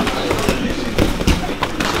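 Sparring strikes landing: boxing gloves and shin guards smacking against gloves and bodies in an irregular run of sharp slaps, with voices in the background.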